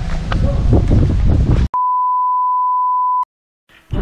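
Wind rumbling on the microphone with faint voices, cut off abruptly about halfway through by a steady high electronic beep lasting about a second and a half, like an edited-in bleep, then a moment of silence.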